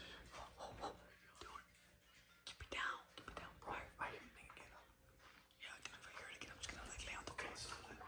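A young man whispering quietly to the camera in short bursts.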